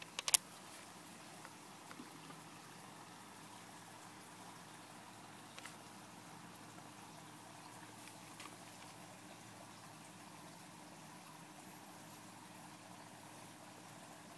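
Faint steady background hum with a few sharp clicks, a quick cluster of three just after the start and a couple of fainter ones later.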